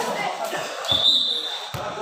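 A volleyball referee's whistle gives one short, steady, high-pitched blast about a second in. Voices and a few low thuds of the ball are heard around it.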